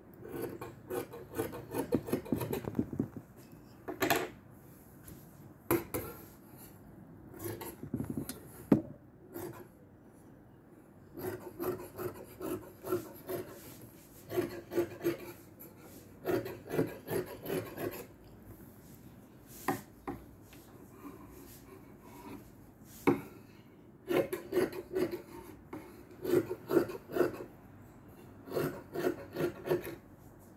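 Scissors cutting through stretch net lace fabric on a table: runs of rapid snipping strokes, separated by a few single sharp clicks.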